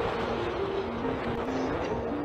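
Steady roar of waterfalls in flood, rushing water pouring heavily down a gorge, with a slow melody of single notes playing over it.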